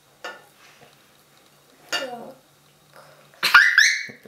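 Faint clicks and clinks of onion slices and a plate being handled on a tabletop, then a young girl's loud, high-pitched laughing squeal near the end.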